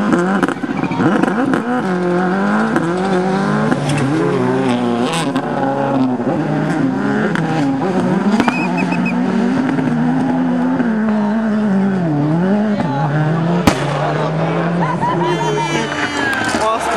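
Rally car engines revving, their pitch rising and falling throughout.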